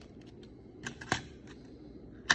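A couple of light plastic clicks about a second in, from a UMD disc being handled and loaded into a PSP 2000 handheld.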